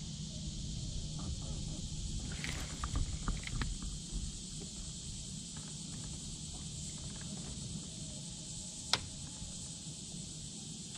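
Steady high drone of insects, with a few light clicks and knocks of the rod and reel being handled a few seconds in and one sharp click about nine seconds in.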